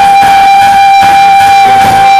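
A female lead singer holds one long, high, belted note over a live band, loud through the hall's sound system.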